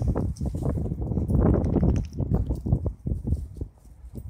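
A dog growling and scuffling in a shrub bed as it attacks something on the ground: an irregular run of low rumbles and knocks that dies down near the end.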